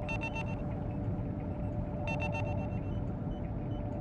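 Designed sci-fi cockpit ambience: a steady low engine rumble under a held hum tone. A quick cluster of high electronic beeps repeats about every two seconds.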